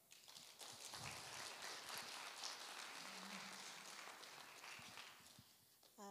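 Congregation applauding, a fairly faint spread of many hand claps that dies away about five seconds in.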